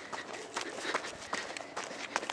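A person's quick footsteps crunching on dry dirt and gravel, about four uneven steps a second.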